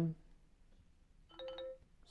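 Short two-note chime from a Xiaomi Mi 8 phone's speaker, the preview tone played as a volume slider is adjusted. It comes about a second and a half in: a lower note, then a higher one held briefly.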